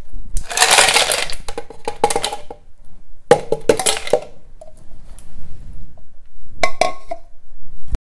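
Ice cubes tipped from a cup into a tall glass jar of fruit juice, clattering and clinking against the glass in two pours. A few more sharp clinks near the end.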